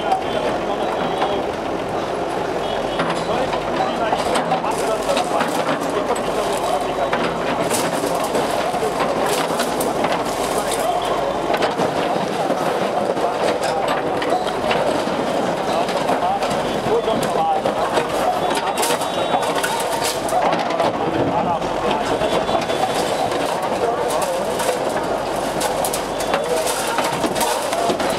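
Backhoe loader's engine running as its bucket breaks down a brick wall, with bricks and rubble crashing down several times, under steady crowd voices.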